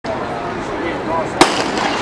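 A single loud, sharp bang about one and a half seconds in, over a steady background of crowd voices.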